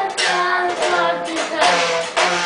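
Music with a steady beat and a small child's voice singing along, most likely the built-in tune of a battery toy electric guitar with a toddler singing.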